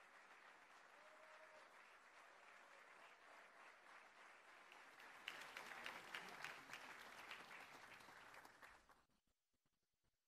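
Faint audience applause in an auditorium, swelling with sharper individual claps about five seconds in, then cutting off abruptly near the end.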